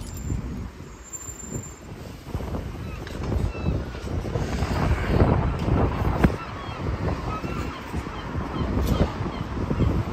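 Wind buffeting a handheld camera's microphone, an uneven rumble that gusts louder a few seconds in, along with handling noise as the camera swings.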